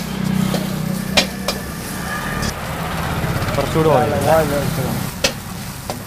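Vegetables sizzling as they are stir-fried in a steel wok, with a steady low hum from the gas burner beneath and a metal ladle knocking sharply against the wok three times. A voice is heard briefly about two-thirds of the way through.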